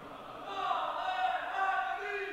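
Congregation reciting salawat together in response to the call, many voices chanting the blessing on the Prophet and his family in unison.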